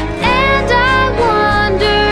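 A song playing: a singer holds long, gliding notes over a steady instrumental backing.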